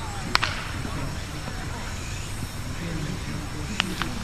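Two sharp cracks, one about a third of a second in and a second near the end, over faint voices and a steady low background hum.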